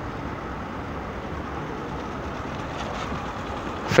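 Small Honda single-cylinder motorcycle engine running at low speed, a steady hum mixed with outdoor noise.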